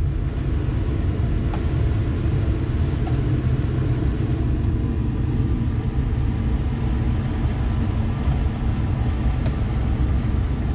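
Air-conditioning blower of a 2005 Ford F-250 running on a high setting, a steady rush of air in the cab that comes up in the first second, over the low, steady idle of the truck's 5.4-litre gas V8.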